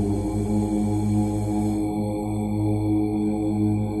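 Background music of a chanted mantra, with deep, sustained voices held over a steady drone.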